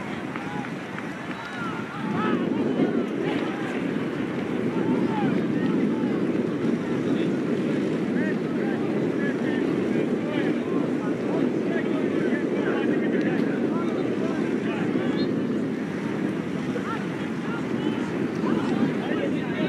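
Wind rumbling on the microphone, getting stronger about two seconds in, with distant voices shouting and talking throughout.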